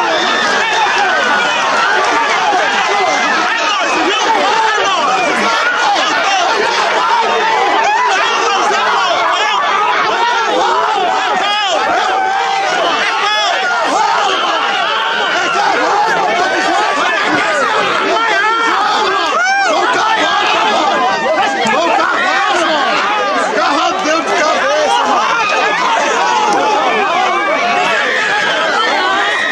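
A crowd of men shouting and talking over one another without pause, with no one voice standing out.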